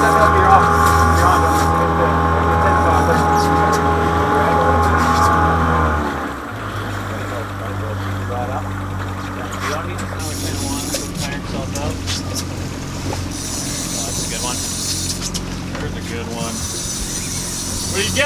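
Twin Mercury outboard motors running steadily, pushing the boat along at trolling speed. About six seconds in the sound cuts abruptly to a quieter, lower engine drone, with a few scattered clicks over it.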